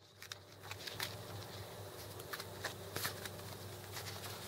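Faint rustling and scattered soft clicks from fishing line being handled by hand, over a quiet outdoor background.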